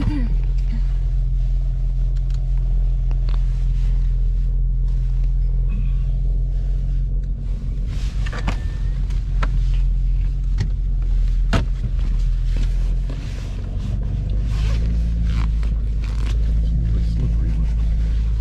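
Car engine idling, heard from inside the cabin as a steady low hum, with a few sharp clicks. About thirteen seconds in the hum shifts as the car pulls away.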